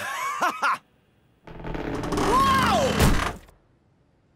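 Cartoon sound effects of a set structure creaking, in two spells with gliding pitch, the second ending in a thunk about three seconds in.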